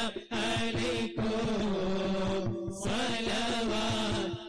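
A group of voices chanting an Arabic Mawlid (Moulid) recitation in unison, a melodic devotional chant with long held notes and brief pauses for breath.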